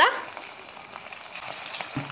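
Chowmein pakoda batter deep-frying in hot oil in a kadhai: a steady sizzle with fine crackling.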